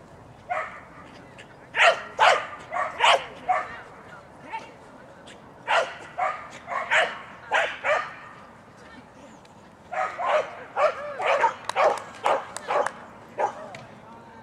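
A dog barking in quick runs of short, sharp barks, in three spells with brief lulls between them, during a fast agility run.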